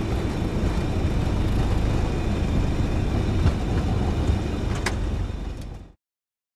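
Steady, loud rumble in a Boeing 717 cockpit during the landing roll just after touchdown, with the Rolls-Royce BR715 engines in reverse thrust and the wheels running on the runway, with a few light clicks. The sound fades out quickly near the end.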